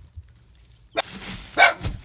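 A poodle barks once, short and sharp, a little past halfway through. A rustling starts just before it, about a second in, over a quiet first second.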